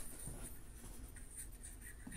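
Faint room noise with light scratchy rustling.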